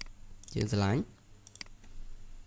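A short spoken syllable, then a computer mouse clicking twice in quick succession about one and a half seconds in.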